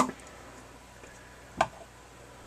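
Quiet room tone with a single short click about one and a half seconds in, from handling of the plastic collector's case.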